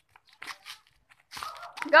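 Children's voices, with a child shouting "go" at the very end, which is the loudest sound; a few faint short scuffing noises come in the first second.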